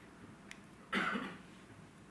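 A single short cough about a second in, after a faint click.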